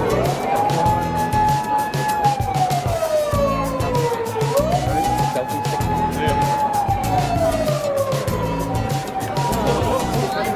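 An emergency-vehicle siren wailing, rising quickly, holding, then sliding slowly down, twice over, above background music.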